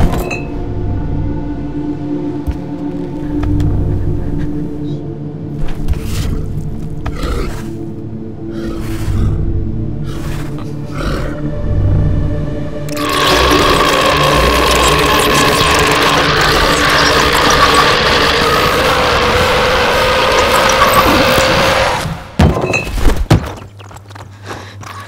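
Dark horror film score of sustained drones and low rumbles with scattered short hits. About halfway through it swells into a loud, dense wash of sound that cuts off suddenly, followed by a couple of sharp hits.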